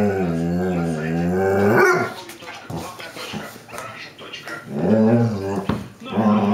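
A dog talking back in drawn-out, voice-like calls. There is one long call of about two seconds at the start whose pitch wobbles up and down, then quieter sounds, then a shorter call near the end.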